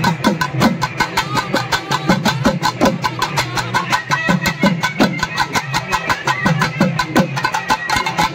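Street band of clarinets and a trumpet playing a lively folk melody over fast, steady drumming on a two-headed drum.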